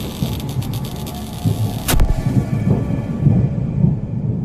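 Cinematic logo-intro sound effect: a heavy low rumble with fine crackling, and one sharp crack about two seconds in.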